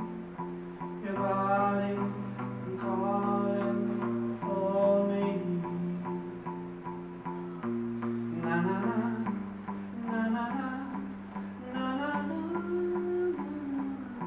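Live solo song: a male singer accompanying himself on electric guitar, holding sustained chords that change a few times while he sings short phrases over them.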